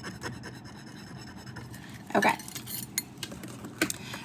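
A metal jewelry hook clasp rubbed back and forth on a black testing stone, a faint rapid rasping that stops about two seconds in, followed by a light click near the end. The rubbing leaves a streak of metal on the stone for an acid test of whether the piece is sterling silver.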